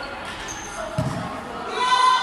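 A volleyball is struck once, a single sharp thud about a second in that echoes in a large sports hall, with players' voices calling out near the end.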